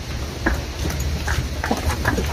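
Cattle hooves clopping and shuffling on hard ground as a small herd of cows jostles and moves off together, with irregular, overlapping knocks.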